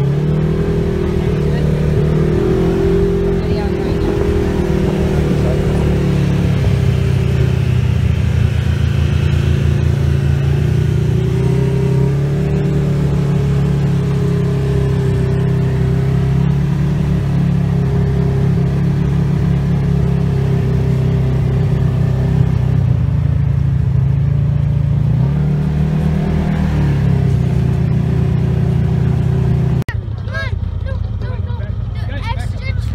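Engine of the off-road vehicle carrying the camera running steadily at low speed, heard from inside the vehicle as a loud, even drone, with a brief shift in engine speed a few seconds before the end.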